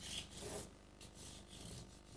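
Faint rubbing and scratching strokes of a hand working over paper on a tabletop, a few soft strokes near the start and weaker ones later.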